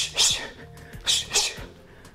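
Short, sharp hissing exhalations in two quick pairs about a second apart, a boxer's breath timed to one-two punches while shadowboxing, over background workout music with a steady beat.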